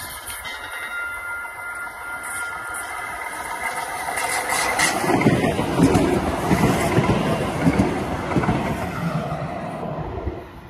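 A TriMet MAX light-rail train approaching and passing close by, its wheels rumbling and clattering over the track. The sound builds from about three seconds in and is loudest as the cars go past in the second half, with many irregular knocks.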